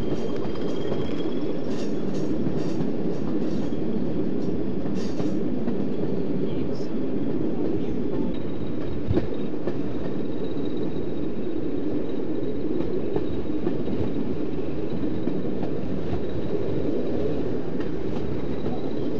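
A train running, heard from an open carriage window behind a pair of Class 20 diesel locomotives: a steady rumble, with a run of sharp wheel-on-rail clicks in the first few seconds and a faint high whine joining from about halfway through as the train rounds a curve.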